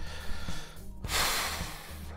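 A sharp, noisy breath about a second long, starting halfway through, over steady background music.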